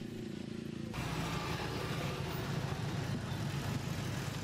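Street traffic with motor scooters passing: a steady rumble of traffic that gets louder about a second in.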